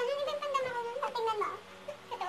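A woman's high, drawn-out whining voice, like a mock cry, wavering for about a second and a half and then trailing off in a shorter falling whine.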